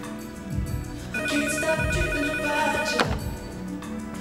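A telephone rings once with an electronic, warbling ring. It starts about a second in, lasts about two seconds and cuts off suddenly. Background music runs underneath.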